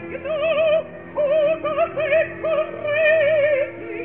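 An operatic voice sings short, high phrases in German with wide vibrato, broken by brief breaths, over a held orchestral note. It comes from an old 1933 live opera recording, with the top of the sound cut off.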